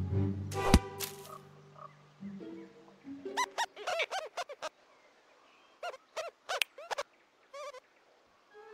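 Cartoon rodents snickering: volleys of short, high, squeaky giggles, one burst a few seconds in and several more near the end. Near the start, low sustained orchestral music with a single sharp thump, the loudest sound.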